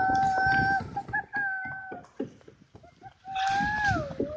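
A person's long, high-pitched calls, two held notes of about a second each and a third near the end that dips in pitch, sounded at dolphins swimming beside the boat.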